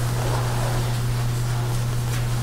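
Steady low hum with a faint even hiss, and no speech: the room tone of the meeting recording.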